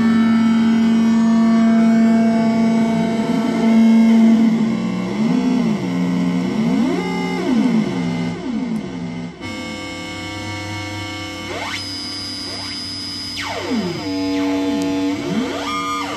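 Electronic noise music from a pedal-and-electronics rig: a dense layered drone of many sustained tones with pitches swooping up and down. About nine seconds in the texture cuts abruptly to a thinner drone crossed by rising and falling sweeps.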